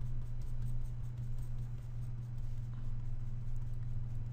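Steady low electrical hum from the recording setup, with faint scratchy rubbing over it as the pointer is worked across the desk.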